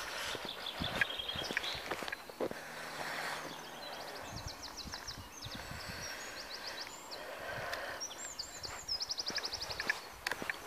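Songbirds singing in runs of quick, high notes, several a second, over the footsteps of someone walking on a tarmac path.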